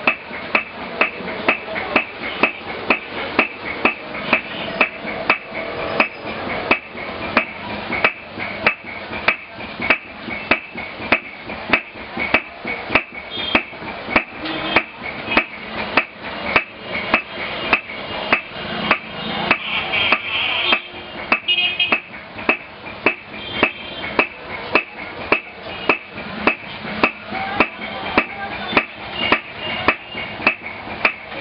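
Steady hand-hammering at about two blows a second: a gold beater's hammer striking a leather packet of gold or silver leaf interleaved with paper.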